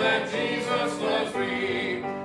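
A group of voices singing a hymn together, led by a song leader. There is a short break between phrases near the end.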